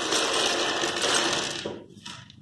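Many small plastic building blocks clattering and rattling as hands sweep them across a tabletop, a dense run of clicks that fades out shortly before the end.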